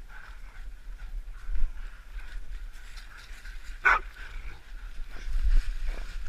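A hunting dog barks once, sharply, about four seconds in, over footsteps crunching through dry fallen leaves.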